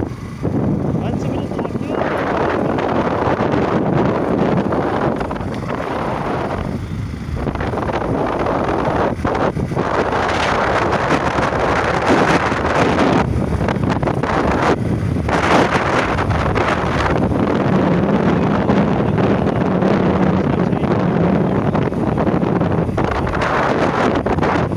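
Wind rushing over the microphone of a moving vehicle, with engine and road noise underneath. The level rises and dips with the gusts, and a low steady engine hum comes through in the second half.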